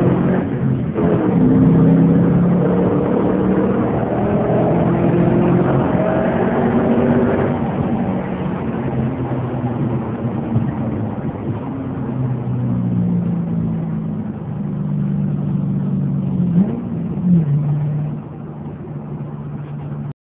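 2010 Ford Mustang GT's 4.6-litre V8 heard from inside the cabin under hard acceleration: a brief break about a second in at a gear change, then the engine pitch rises for several seconds. From about eight seconds in the engine note settles lower as the car slows, and it gets quieter near the end.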